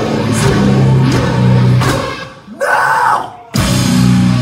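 Hardcore-metal band playing live and loud: distorted guitars, bass and drums. A little past two seconds in, the band cuts out for about a second, leaving a short burst of higher-pitched noise, then crashes back in together near the end.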